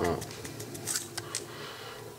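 Plastic squeeze bottle of chocolate sauce being squeezed over a plate: a few short, faint clicks and squirts as the sauce comes out.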